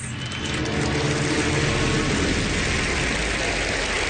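Studio audience applauding and cheering, a steady loud wash of clapping with a few held voices in the first couple of seconds.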